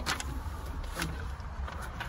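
Peugeot 107's small engine idling steadily, heard from inside the cabin as a low hum, with a couple of light clicks.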